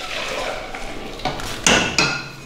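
Kitchenware being handled on a counter, with a sharp clink near the end as the hot-water pitcher is picked up.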